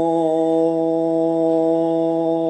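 A sustained 'Om' chant: one deep voice held on a single steady pitch, droning without a break.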